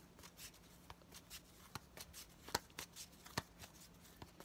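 A deck of tarot cards being shuffled by hand: faint, irregular soft clicks and flicks of card against card.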